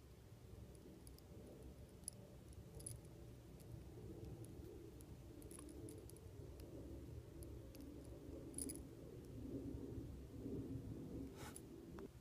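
Faint scattered light clicks and scrapes of a small metal screwdriver trimming and pressing soft epoxy sculpting clay on a small action figure head, over a low steady room hum, with a sharper click near the end.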